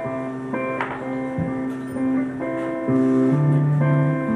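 Electric guitars playing a slow instrumental intro of ringing chords that change every second or so, getting louder about three seconds in.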